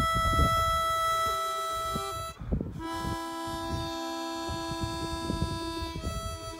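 Live music on a wind instrument, holding two long chords: the first breaks off a little over two seconds in, and the second starts half a second later and is held on.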